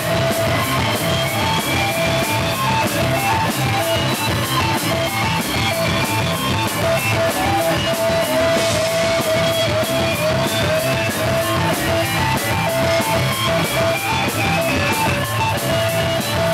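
Live rock band, electric guitar and drum kit: the guitar plays a repeating riff over a steady beat of cymbal hits, with no singing.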